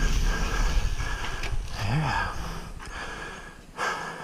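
Mountain bike rolling down a dirt trail over leaf litter, with a low rumble of trail and wind noise on the rider-mounted camera that fades as the bike slows to a stop. The rider's breathing is heard, with a short rising-and-falling vocal sound about two seconds in.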